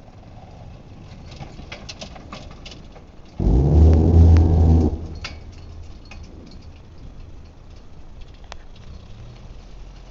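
Homemade tractor's old Dacia four-cylinder petrol engine running steadily, with scattered light clicks and rattles. About three and a half seconds in, a much louder steady low drone starts suddenly and cuts off a second and a half later.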